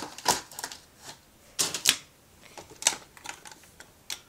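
Handling noise: several irregular sharp clicks and knocks as small objects are picked up, moved and set down right next to the phone's microphone.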